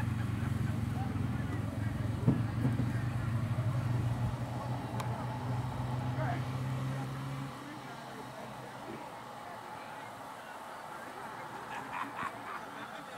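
A steady low engine hum that stops abruptly about seven and a half seconds in, with faint voices in the background.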